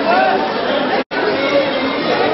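Chatter of many people talking at once, overlapping voices with no single speaker standing out. The sound cuts out completely for an instant about a second in.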